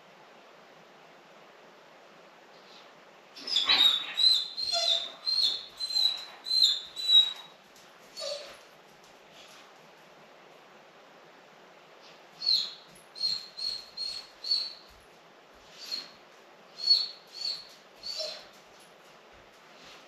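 Golden retriever whining: two runs of short, high-pitched whines, about eight in each, with a pause of a few seconds between. This is the distress of a dog left alone in the house for the first time.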